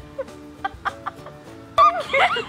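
Background music with held notes and a few short clicks, then near the end a sudden loud burst of a girl's high-pitched laughter.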